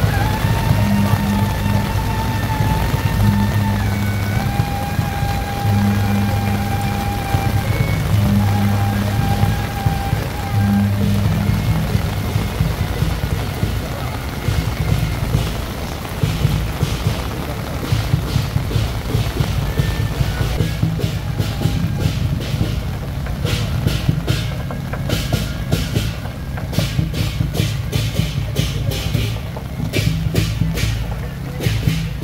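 Procession music with long held melody notes that step in pitch over a pulsing low bass, under a steady hiss of heavy rain. From about two-thirds of the way in, a rapid run of sharp cracks joins it.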